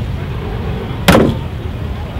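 A single loud slam about a second in, the Ferrari 330 P3/4's door being shut, heard over a steady low rumble.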